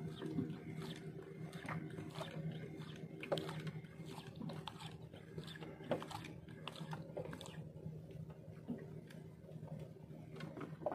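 A fishing reel being cranked while playing a hooked fish, giving irregular clicks and ticks over a steady low hum.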